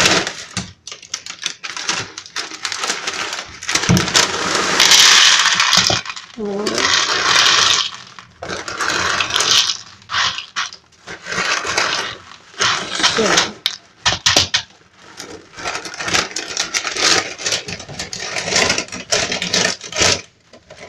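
Clear plastic bag of breakfast cereal crinkling and rustling as it is handled, in loud stretches, with scattered clicks and knocks.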